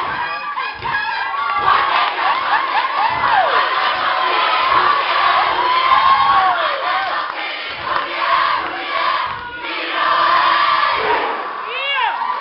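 A haka: a large group of young men shouting a chant in unison, while a student audience cheers and screams with many high voices rising and falling.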